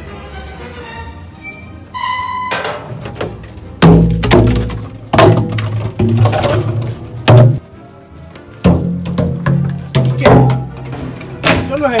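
A series of loud, heavy thunks about every second and a half, from large plastic water jugs being pulled and knocked about on a metal rack, over background music.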